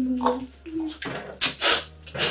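A man crying: wavering sobbing moans broken by sharp, breathy gasps, the loudest about a second and a half in.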